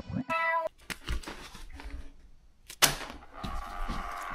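Logo intro sound effects: a short pitched tone lasting about a third of a second near the start, scattered faint clicks, then a sharp hit shortly before three seconds in, the loudest moment.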